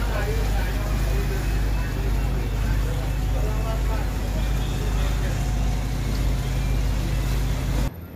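Motorboat engine running steadily underway, a constant low hum under the rush of water churning in the wake, with faint voices in the background. It cuts off abruptly just before the end.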